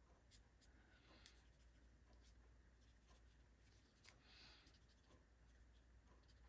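Faint scratching of a Stampin' Blends alcohol marker tip on cardstock, a few soft, irregular strokes over near silence.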